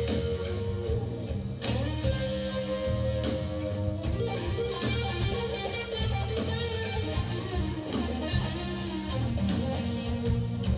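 Live blues-rock band playing an instrumental passage: a Stratocaster-style electric guitar plays sustained lead lines over bass guitar and drums, with cymbal strokes about three a second.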